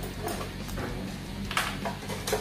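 Clicking and scraping as a hand tool undoes a screw under the plastic rear body panel of a Yamaha Mio Sporty scooter and the panel is handled, with a louder rasp about one and a half seconds in.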